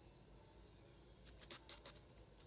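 Computer keyboard keystrokes: a quick run of about four sharp key clicks in the second half, over quiet room tone.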